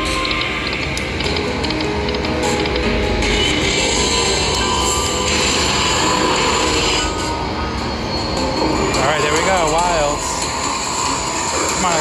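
Walking Dead video slot machine playing its game music and reel-spin sound effects, with a warbling, wavering tone near the end.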